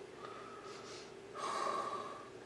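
A person breathing out sharply through the nose close to the microphone, once, about one and a half seconds in, over a faint steady hum.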